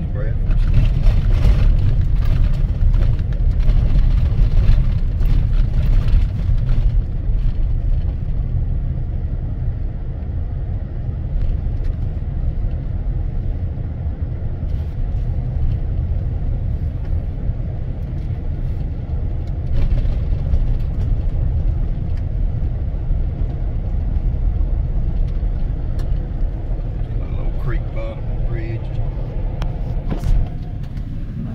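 Car cabin noise while driving: a steady low rumble of engine and tyres on the road, rougher and louder for the first several seconds.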